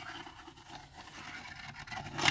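Pencil scratching on paper as it drives a small plastic spirograph gear around inside the toothed ring of a spiral art set: a faint, steady scraping.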